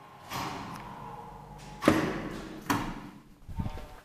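Landing door of an old Kone traction elevator being opened: a faint steady hum stops, then two loud clunks about a second apart as the door is unlatched and swung open, followed by a few softer knocks as the car is entered.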